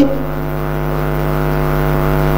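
A steady electronic buzzing drone with a low hum beneath it. It starts the instant the speech cuts off and grows slightly louder.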